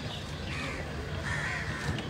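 Two faint bird calls, one early and one later, over a steady low outdoor hum.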